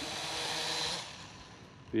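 DEERC D50 quadcopter's propellers buzzing close by as it comes down for a hand landing, growing louder then dying down after about a second.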